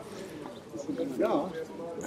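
Voices of people talking nearby, with a bird calling.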